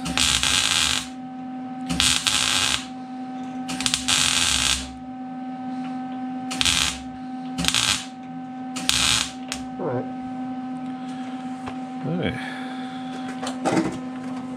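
Wire-feed (MIG) welding on the truck's sheet-metal cab corner, in about six short runs of half a second to a second each, with pauses between them. A steady electrical hum runs underneath.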